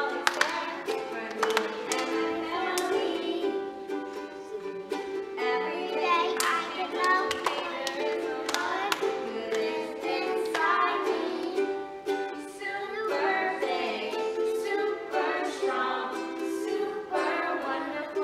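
A children's choir song: singing over an upbeat plucked-string accompaniment with regular strummed attacks.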